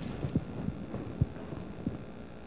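About five soft, low thumps at uneven spacing, the loudest about a second and a quarter in, over a faint steady hum.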